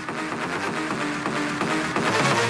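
Music: a repeating melody of short plucked notes, guitar-like, with no vocals, growing slightly louder.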